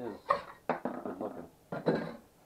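A hand-held scraper scraping a freshly printed Benchy off a 3D printer's bed in a few short, sudden strokes until the print comes free.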